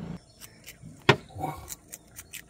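A single sharp click about a second in, amid otherwise quiet handling sounds.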